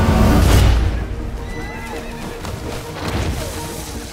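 Movie soundtrack: a deep rumble that fades about a second in, then film score music with a horse whinnying over it.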